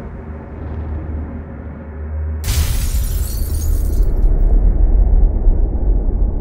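Cinematic trailer sound design under the title graphics: a deep rumbling drone, then about two and a half seconds in a sudden loud crash of hissing noise over a deep boom. The hiss fades over a second or so while the low rumble swells.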